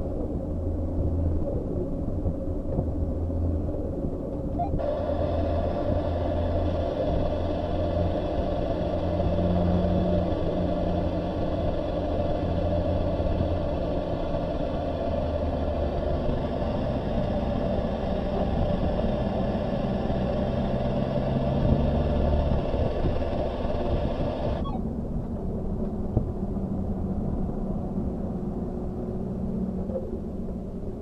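Kia Sportage QL's engine and road noise heard from inside the cabin while it is driven hard on track, a steady rumble with engine tones rising and falling. From about five seconds in until about 25 seconds in, a higher steady buzz of several tones joins it, starting and stopping suddenly.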